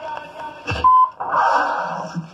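Music from a vinyl DJ mix: the pulsing beat drops out, a thump comes about two-thirds of a second in, then a short high beep, and a buzzy, noisy electronic sound starts just after.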